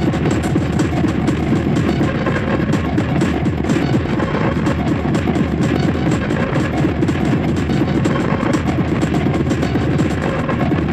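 Loud, dense industrial hardcore electronic music, running without a break, with closely packed percussive hits over a heavy low end.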